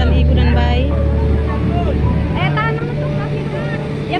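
A boat engine's steady low drone with people's voices over it; the drone changes pitch a little over two seconds in.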